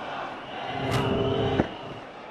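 Cricket ball striking a batsman's helmet, a single sharp knock about a second in, over a steady drone of stadium crowd noise that swells and then cuts off suddenly.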